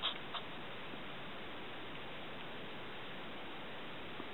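Steady hiss of the camera's own background noise, with a couple of faint clicks right at the start. No distinct howls stand out from it.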